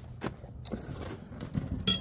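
A few light metallic clicks and clinks, spread out, with a sharper one near the end, from a coil of thin bendable wire being handled.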